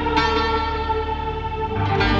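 Electronic keyboard music: sustained chords with a string-pad voice, changing chord just after the start and again near the end.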